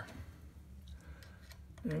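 A few faint clicks of a small metal tool being picked up and handled, over a low steady hum.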